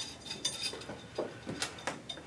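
Small metal nuts clinking against the threaded metal rods and top flange of a glass still column as they are set on and spun down by hand. A few light clinks, the sharpest two near the end.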